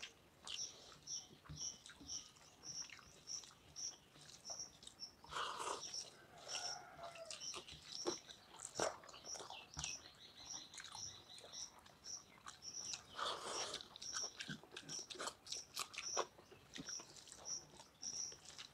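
Close mouth and hand sounds of people eating rice and curry by hand: wet chewing, lip smacks and fingers mixing rice on steel plates, in short irregular clicks. A high insect chirp repeats about twice a second underneath.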